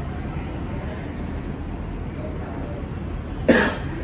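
A man coughs once, short and sharp, near the end, over a steady low background rumble.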